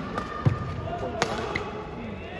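Badminton racket striking the shuttlecock with one sharp crack a little after a second in, preceded by a louder dull thump about half a second in.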